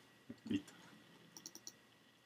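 Quiet run of four or five quick, faint clicks from a computer being worked, about one and a half seconds in, preceded near the start by two short, soft vocal sounds.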